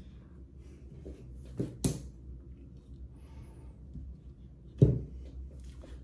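A few sharp knocks and clatters of hickory golf clubs being handled and laid down on a workbench, the loudest about five seconds in, over a low steady hum.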